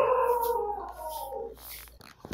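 A long, high whining call that slowly falls in pitch and fades out about a second and a half in.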